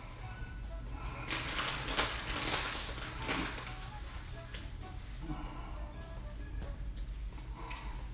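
Quiet background music, with crinkling of a plastic bag of shredded cheese being handled from about a second in to about three and a half seconds in.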